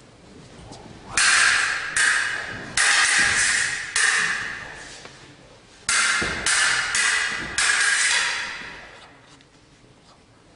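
Swords clashing blade on blade, in two runs of about four strikes each. Each clang rings and fades out.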